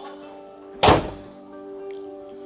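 A car bonnet slammed shut: one loud thunk about a second in, over background music.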